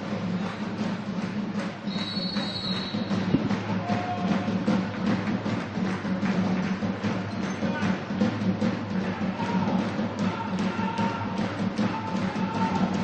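Steady drumbeat, music or fans' drum, over a constant background of crowd noise in a sports hall.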